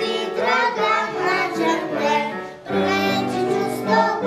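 Children's choir singing a song together, with a short breath between phrases a little past the middle.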